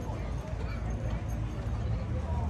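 Footsteps on wooden boardwalk decking, with people talking in the background.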